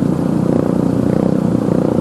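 A motor vehicle engine running steadily, a continuous loud mechanical drone.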